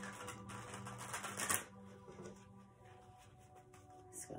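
A deck of tarot cards being riffle-shuffled by hand: a fast run of card flicks for about a second and a half, loudest near its end, then quieter handling of the deck. Soft background music with sustained tones plays underneath.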